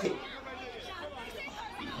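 Faint chatter of several people talking in the background, with no one voice standing out.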